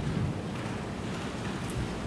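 Steady, even hiss of background noise in a courtroom's microphone feed, with no distinct event.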